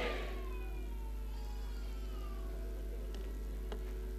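Low-level hall background through the sound system: a steady hum, with faint thin tones sliding slowly downward in pitch during the first half and two soft clicks near the end.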